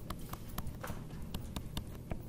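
Stylus clicking against a tablet screen while writing short strokes: an irregular run of sharp ticks, about four a second, over a low room hum.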